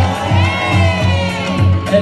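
Dancehall music playing loud with a steady bass beat, and a crowd cheering and shouting over it.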